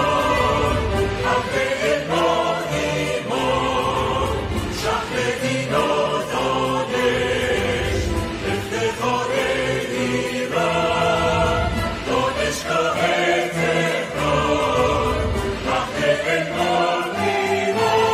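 Background music: a choir singing long, held phrases.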